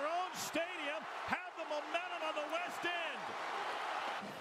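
Stadium crowd cheering, with a wavering voice over the cheering and a few short knocks.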